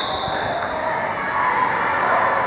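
Indoor arena ambience during a wrestling bout: crowd voices and shouts blur into a steady din, with a few faint knocks.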